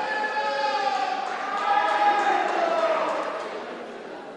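A person's voice with long drawn-out syllables, echoing in a large hall, fading out near the end.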